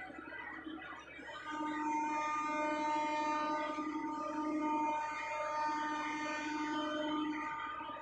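A river passenger launch's horn sounds one long, steady blast of about six seconds, starting a second and a half in, over a steady background noise.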